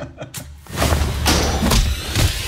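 Trailer sound design: a short knock about a third of a second in, then a loud heavy thump that opens into a dense rumbling noise with a deep low end, lasting from about three-quarters of a second in.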